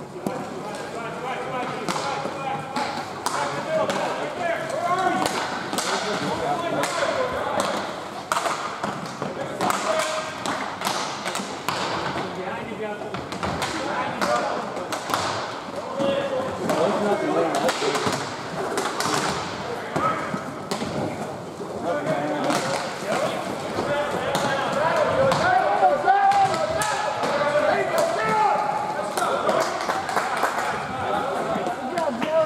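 Inline roller hockey in play: irregular sharp clacks and knocks of sticks, puck and skates on the plastic rink floor, over the continuous voices of players and onlookers.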